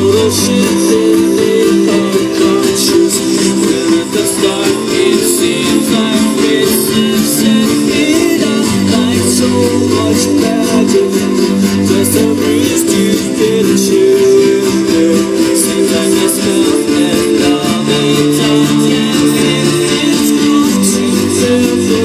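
Loud live music from a festival stage, picked up by a phone's microphone in the crowd: sustained chords over a shifting bass line, running without a break.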